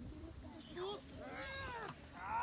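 German shepherd police dog whining: a short high cry, then a longer one that rises and falls near the end.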